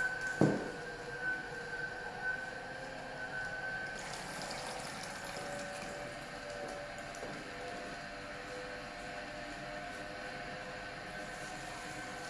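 An HH-916F vertical slow juicer's motor and auger running steadily with a whine while grinding almonds, with a sharp knock about half a second in. From about four seconds almond milk pours from the opened spout into the jug, adding a hiss.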